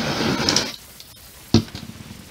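Handheld butane torch hissing as it is passed over wet acrylic paint to pop air bubbles, cutting off suddenly under a second in. A single sharp knock follows about a second and a half in.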